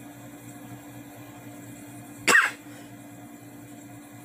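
A single short cough about two and a half seconds in, over a steady low background hum.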